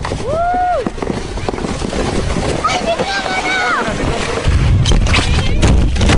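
Sled riders sliding down a snowy slope, shrieking twice: one long cry near the start and another about three seconds in, over a steady scraping noise. From about four and a half seconds there is a much louder rumbling with a run of sharp knocks, as the sled tumbles into the snow close to the microphone.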